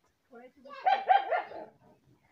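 A dog barking several times in quick succession.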